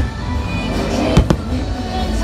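Fireworks shells bursting: a bang right at the start, then two more in quick succession just after a second in. The show's music plays loudly underneath.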